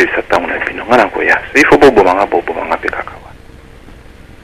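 Speech only: a man talking in a thin, phone- or radio-like voice that stops a little after three seconds in.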